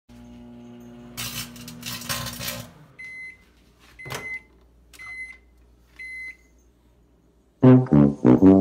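Hamilton Beach 900-watt microwave oven running with a steady hum and a rushing noise over it, then shutting off at the end of its countdown and beeping four times, about once a second, with a click at the second beep. Brass-led music starts just before the end.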